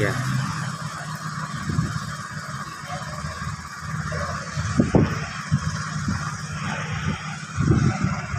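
Steady hum of road traffic, with a few short knocks about five seconds in.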